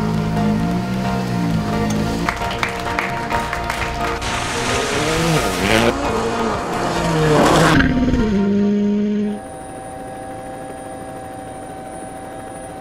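Background music, joined in the middle by a Hyundai i20 WRC rally car passing at speed: the engine rises and falls in pitch with a rush of tyre and gravel noise, loudest a little before two-thirds through. The music carries on alone and more quietly near the end.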